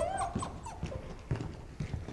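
A puppy whimpering briefly at the start, then footsteps on concrete as it is carried.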